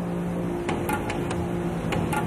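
Tugboat engines running hard: a steady low drone, with a few faint sharp clicks.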